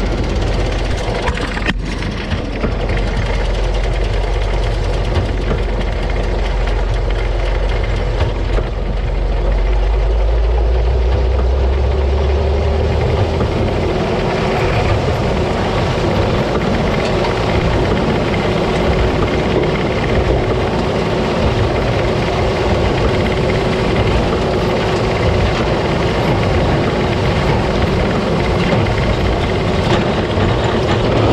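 Krone BiG Pack large square baler and its tractor running close up as the pickup feeds a windrow of corn fodder into the baler: a loud, steady mechanical din. A deep engine drone underneath drops away about 13 seconds in.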